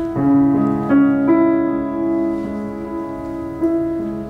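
Grand piano playing a slow accompaniment of sustained chords, with new chords struck several times in the first second and a half and then left ringing, and no voice over it.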